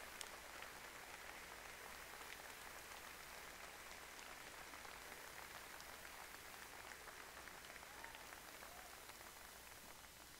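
Faint crowd applause, a steady patter of many hands clapping that slowly dies down toward the end.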